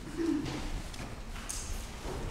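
Whiteboard marker writing short letters: a faint wavering squeak early on, then a brief scratchy stroke about one and a half seconds in.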